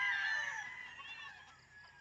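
Roosters crowing: a long, high crow trails off over the first half second or so, followed by fainter crows from birds farther off.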